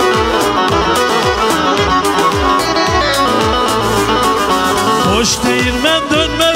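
Instrumental Black Sea folk music: a Karadeniz kemençe, a small three-stringed bowed fiddle, playing a fast melody over a steady percussion beat.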